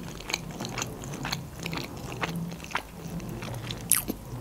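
A woman chewing a mouthful of sushi roll with her mouth closed, making many small, irregular wet clicks.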